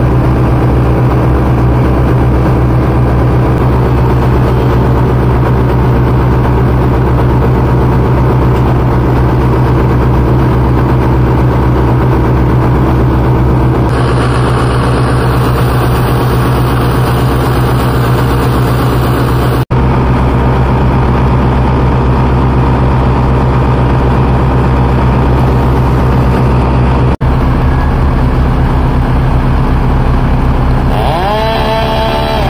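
Bucket truck's engine running steadily with a deep, even hum, briefly cut off twice.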